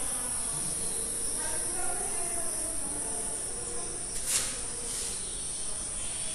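Marker pen writing on a whiteboard, with a short sharp stroke about four seconds in and a fainter one about a second later, over a steady high-pitched hiss.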